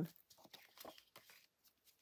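Faint, scattered light ticks and rustles of paper and a kitchen towel being handled and shifted on a craft desk.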